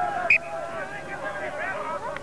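Men's voices calling out across the field, with one short, sharp, high-pitched sound about a third of a second in.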